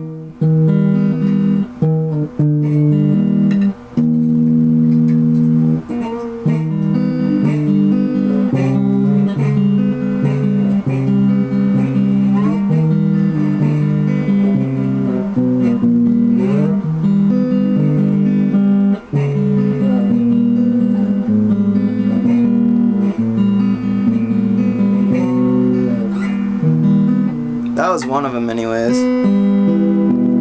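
Guitar music: held notes and chords that change about once a second, with a few sliding notes.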